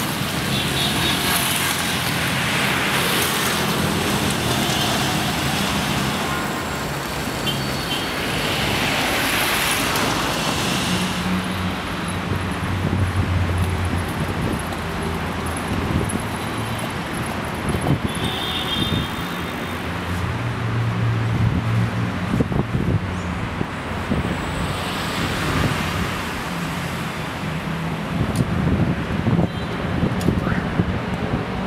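City street traffic: cars passing on a busy avenue, a steady hum of engines and tyres that swells and fades as vehicles go by.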